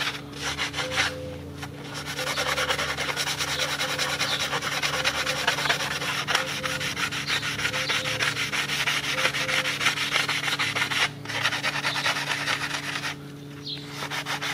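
Sandpaper on a hand sanding block rubbed quickly back and forth over the gasket face of a cylinder head, scuffing off old head-gasket residue to prepare the surface for a new gasket. The strokes run fast and steady, with brief pauses a little over a second in and again near the end.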